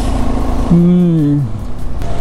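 KTM Adventure motorcycle being ridden uphill: a steady engine drone under a heavy low wind rumble on the mic. Partway through comes a brief spoken sound.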